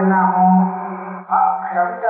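A man chanting verse in a steady recitation tone, the pitch held nearly level, with a brief break for breath about a second in.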